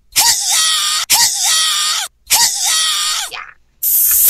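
A person's voice giving three loud, drawn-out wordless cries, each about a second long, dying away shortly before the end.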